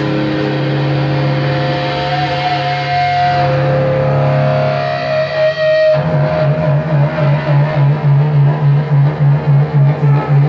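Loud live electric guitar through an amplifier: held, ringing notes for the first half, then, about six seconds in, a low repeated riff pulsing evenly at about three beats a second.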